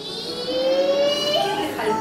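Young children counting aloud, one number drawn out as a long call that rises slowly in pitch.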